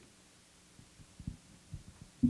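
Faint steady electrical hum from the sound system, with a few soft low bumps of a handheld microphone being handled as it is lowered and passed along.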